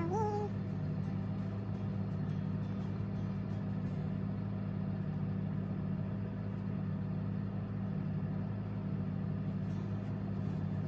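Steady low hum of a car's interior with the engine running. A brief hummed, rising-and-falling note from a woman's voice comes in the first half-second.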